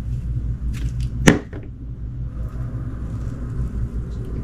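Small knife blade cutting through soft glitter-coated glycerin soap: one sharp slicing crack about a second in, with a few fainter scrapes around it, over a steady low rumble.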